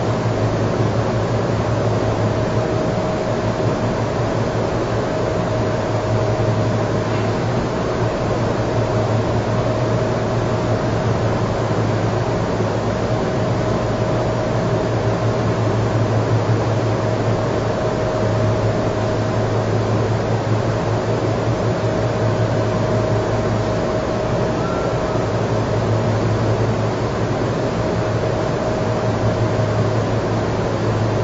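Steady room noise: an even hiss with a low hum and a faint constant mid-pitched tone, unchanging throughout.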